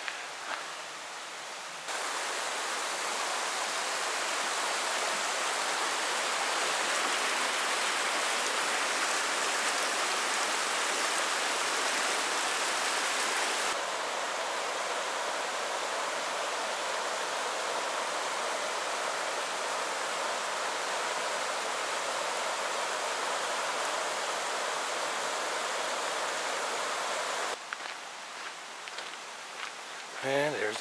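Shallow river rushing over a bed of rocks and boulders, a steady even rush. It starts about two seconds in, drops a little in level about halfway through, and stops a few seconds before the end.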